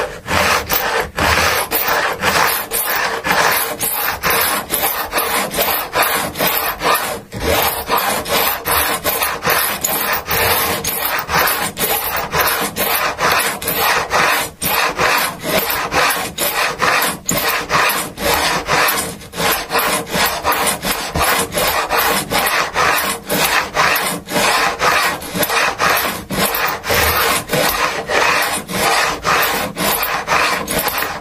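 Fret file set in a wooden block rasping back and forth over the metal fret ends along the edge of a guitar neck, in quick repeated strokes with a few short pauses. The file is taking the new frets down flush with the fingerboard edge and skimming the lacquer off there; the rasp carries on while some fret end is still left to cut.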